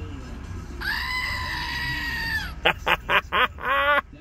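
A screaming-goat novelty toy, a goat figurine on a base that plays a recorded goat scream when pressed. One long scream comes about a second in, then a few short yells, then another rising scream near the end.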